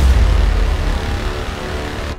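Cinematic trailer title hit: a deep boom at the start, then a long rumbling tail that slowly fades.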